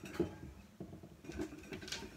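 Household objects being picked up and handled: a few short, light knocks and taps.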